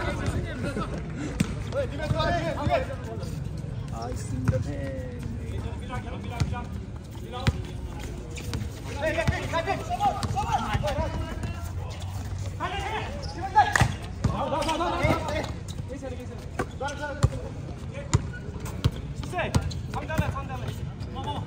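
A basketball bouncing on an outdoor hard court during play, with sharp knocks scattered through, among players' and onlookers' voices calling out.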